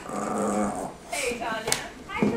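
Boston terrier growling and grumbling in protest at its owner typing on a laptop, in two stretches about half a second apart, the second bending up and down in pitch.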